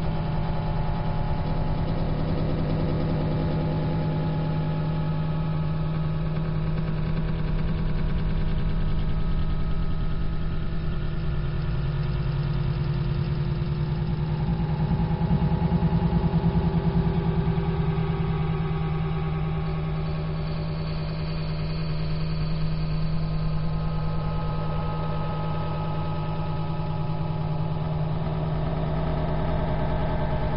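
A steady low drone with several held tones that slowly shift in pitch, dull and muffled by very low-bitrate encoding.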